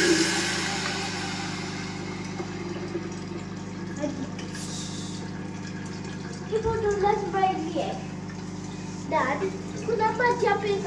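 Tap water pouring into a stainless-steel electric kettle, tailing off within the first couple of seconds as the tap is closed, over a steady low hum. Later there is a short knock, and voices speak briefly in the second half.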